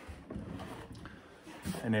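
Faint rustling and handling noise as a lick tank is picked up and lifted, with no distinct knocks.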